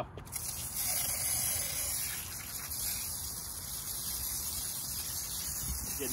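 IK pump-sprayer foamer spraying wheel-cleaner foam through its wand nozzle onto a car wheel: a steady hiss that starts just after the opening moment.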